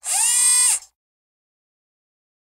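Short logo sound effect: a bright, whirring, machine-like tone that slides up at the onset, holds for just under a second, then stops abruptly.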